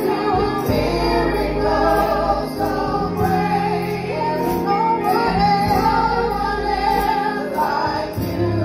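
Gospel choir singing with band accompaniment: held bass notes under the voices and a steady beat of light cymbal strokes.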